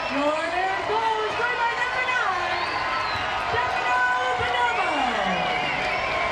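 Soccer crowd cheering a goal, with several voices holding long shouts that slide up and down in pitch over one another.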